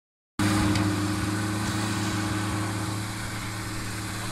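Engine of a Unimog 404 S trial truck running steadily at low, even revs as it crawls through the section, easing off slightly toward the end.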